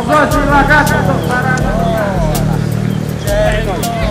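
People talking, unclear and in the background, over a steady low hum.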